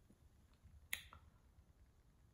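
Near silence, broken by one short, sharp click about a second in, followed by a fainter tick.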